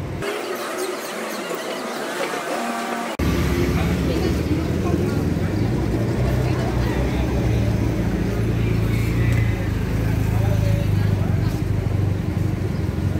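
Street sounds with other people talking in the background. About three seconds in the sound jumps abruptly to a louder, steady low rumble that lasts to the end.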